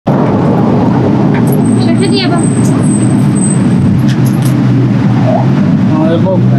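Steady, loud low rumble of street traffic engines, with brief snatches of voices and a thin high whine for about two seconds near the middle.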